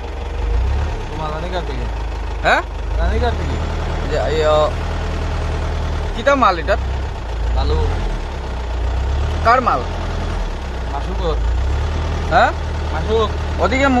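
A vehicle engine idling with a steady low rumble, with short snatches of voices every few seconds.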